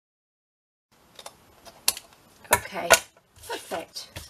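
Silence for about a second, then several sharp clicks and brief rustles of scissors and card being handled on a cutting mat.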